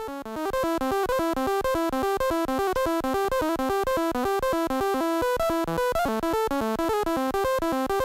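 Groovesizer DIY 16-step sequencer driving its 8-bit Auduino-style granular synth, playing a looping pattern of short, rapidly stepping buzzy notes at a steady level.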